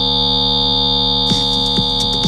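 A loud, steady, high-pitched electronic tone over a low hum, from an album trailer's soundtrack. A soft ticking pulse starts over a second in, about two ticks a second.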